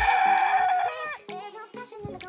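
A rooster crows once, a long call held for about a second that drops off at the end, over background music.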